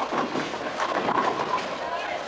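A bowling ball rolling down a wooden lane in a bowling alley, amid background chatter and the clatter of other lanes.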